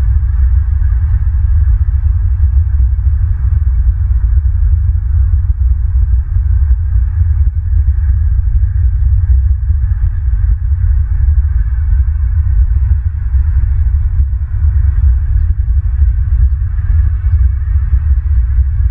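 Low rumble of wind buffeting an outdoor camera microphone, with a rapidly fluttering level, over a fainter higher hiss.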